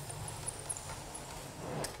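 Soft, faint scraping of a 10-inch drywall flat box being pulled down a wall seam as it spreads a fill coat of joint compound, over a steady low hum.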